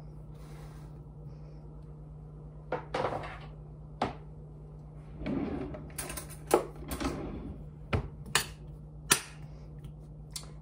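Knocks and clatter of kielbasa pieces and a utensil in a frying pan, as the pieces are put in and moved around to brown: about eight sharp knocks from about three seconds in, with a short rustling clatter just past the middle. A steady low hum runs underneath.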